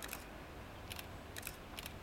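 Camera shutters clicking in short bursts, three or four quick groups of clicks, over a low steady rumble.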